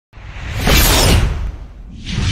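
A swelling whoosh sound effect over a deep rumble, building over about half a second and dying away about a second and a half in.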